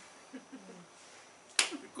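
A pause in a man's talk: faint low voice sounds, then a single sharp click about one and a half seconds in, just before he speaks again.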